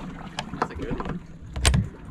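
Several clicks and knocks from a boat's fiberglass fish-well hatch and its latch being handled, the loudest knock near the end.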